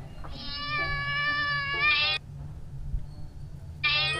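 A cat meowing: one long, steady-pitched meow of about two seconds, then a second meow starting near the end.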